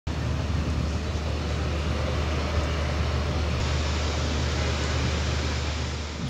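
Steady drone of turboprop aircraft engines running on the airport apron: a constant low hum under an even wash of noise.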